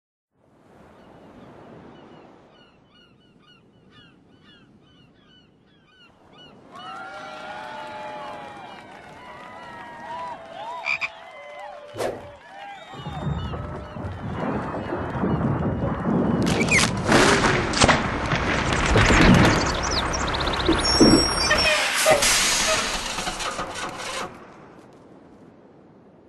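A collage of classic cartoon sound effects layered into a scene. Faint repeated chirps come first, then calls that glide up and down in pitch, and a sharp hit about halfway. After that a long, loud, dense stretch of hits and sliding whistles runs until it stops suddenly near the end.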